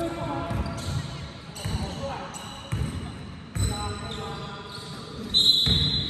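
Basketball being dribbled on a hard sports-hall floor: a series of dull, irregularly spaced thuds, with players' voices over them.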